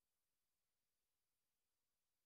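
Near silence: the audio track is essentially empty, with only a faint, steady hiss.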